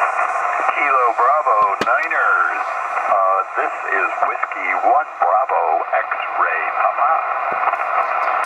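Single-sideband voice from an amateur radio transceiver's speaker: stations calling back in answer to a CQ. The speech is thin and band-limited, over a steady band of receiver noise.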